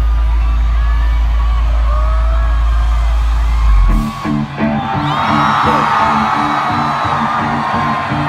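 Live hip-hop concert music through the stage sound system, heard loud from within the crowd: a long held deep bass note, then a sharp hit about four seconds in launches a new beat with a repeating pulsing bass line. Crowd whooping and cheering runs over the music.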